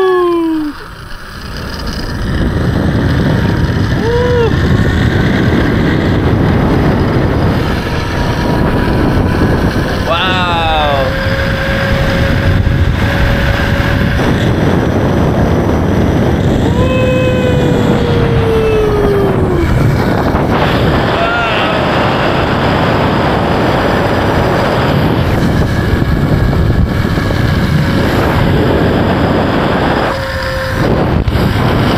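Loud rush of wind on the microphone of a camera riding a fast zip line, building up as the rider picks up speed about two seconds in, with the trolley running along the steel cable. A few short wordless whoops from the rider, one long falling one past the middle.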